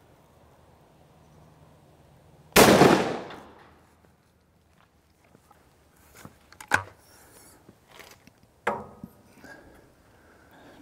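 A single shot from a 12-bore over-and-under shotgun about two and a half seconds in, fired at a steel pattern plate, its report dying away over about a second and a half.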